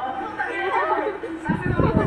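Several people chattering and talking over one another. About a second and a half in, a loud low rumble joins them.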